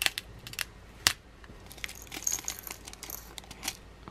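A plastic bag crinkling as small crystal nail rhinestones are tipped into a small clear plastic jar, with a light clattering and tinkling of the stones. There are a few sharp clicks near the start and about a second in.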